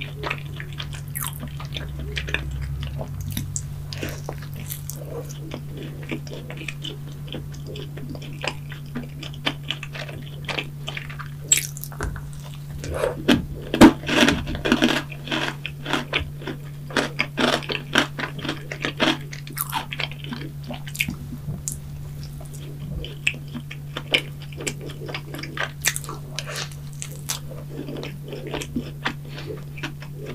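Close-miked chewing and biting of a soft Krispy Kreme yeast donut topped with cream, strawberries and chocolate: a run of sticky mouth clicks and smacks, loudest and densest around the middle, over a steady low hum.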